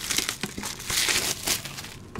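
Clear plastic shrink wrap crinkling and crackling as it is peeled off a metal card tin and crumpled, the crackle thickest about a second in.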